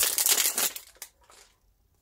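Crinkling of plastic packaging being handled while a Pokémon mini tin is opened, a dense crackle for about the first second that then dies away.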